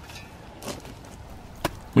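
Square shovel blade pushing into a dry pack mix of sand and Portland cement in a plastic mixing tub: a soft gritty scrape, then one short sharp knock near the end.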